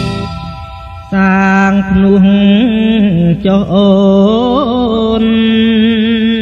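Classic Khmer pop song: the band's drumming drops away in the first second, then a male voice sings long, held, ornamented notes with little backing.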